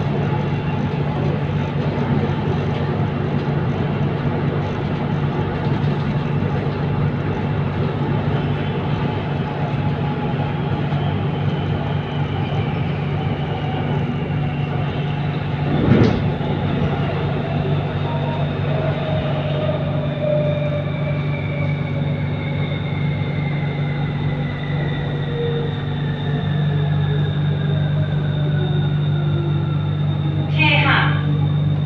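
Inside a Siemens Modular Metro electric train on the BTS Skytrain, running with a steady rumble and electric hum, and a single sharp knock about halfway through. In the second half the motor whine falls steadily in pitch as the train slows into a station.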